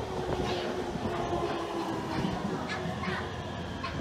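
Electric commuter train with double-deck cars running past a station platform, with a steady hum.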